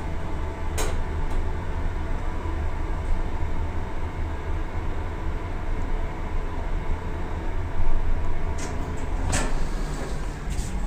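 Toshiba passenger elevator car travelling up one floor, with a steady low hum of the ride. There is a short click about a second in, and sharper clicks near the end as the car arrives and the doors begin to open.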